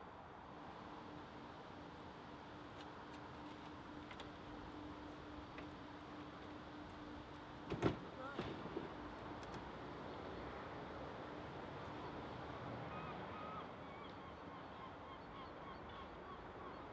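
Faint outdoor ambience with a low steady hum, broken about halfway through by a single sharp knock and a few short pitched calls; small bird chirps come near the end.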